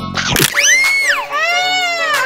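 A short noisy burst, then a voice crying like a baby: two long, high wails that rise and fall, starting about half a second in.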